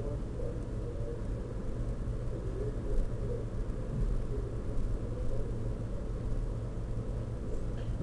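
A steady low rumble of background noise, like distant traffic, with faint muffled sounds above it.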